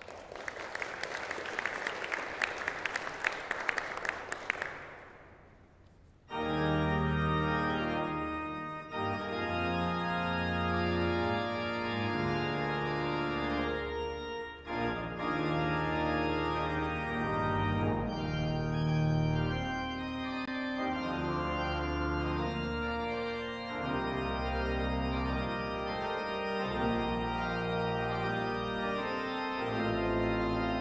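Audience applause for about five seconds, dying away. About six seconds in, the restored Herrick Chapel pipe organ begins, playing slow held chords over a deep bass.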